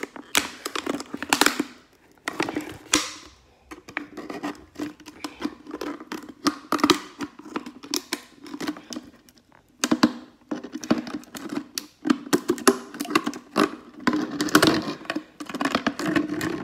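A plastic water bottle being cut and handled: a busy run of irregular clicks, crackles and snips, broken by a few short pauses.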